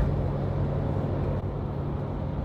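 Steady road and engine rumble heard inside the cabin of a moving SUV.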